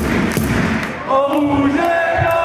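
Players and supporters chanting together in a sports hall, with a heavy thud at the start. The chant grows louder about a second in.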